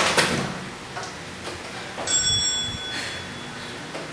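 A single bell chime about two seconds in, ringing for under a second, marking the end of a 30-second exercise interval. A couple of short knocks come at the very start.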